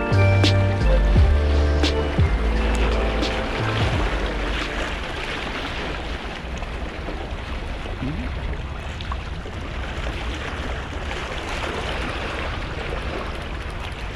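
Background music for the first few seconds, ending about four seconds in. After that, a steady wash of small waves against shore rocks, with wind on the microphone.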